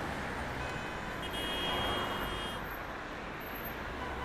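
City road traffic: a steady wash of road noise from passing cars that swells and fades as vehicles go by.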